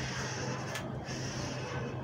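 Felt-tip marker drawing along a curved ruler on pattern paper: the tip hisses across the paper in two strokes, with a short break just under a second in. A steady low hum runs underneath.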